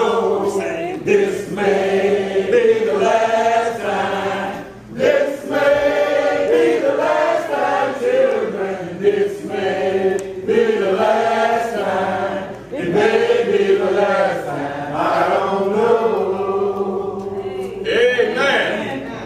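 A church congregation singing a hymn a cappella, with no instruments. Many voices hold long notes together in phrases, with short breaths between them about five seconds in and again near thirteen seconds.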